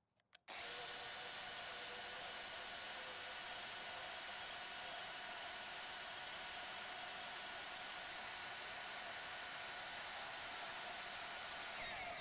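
Cordless DeWalt 20V band saw with a brushless motor cutting through a metal pipe about four inches across. It starts about half a second in, then runs steadily with a constant whine under the blade's cutting noise.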